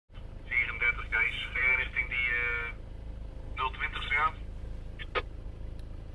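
A thin, tinny voice coming through a small loudspeaker in two bursts, the second shorter. Under it runs a low steady hum in the vehicle cabin, and there are a couple of short clicks near the end.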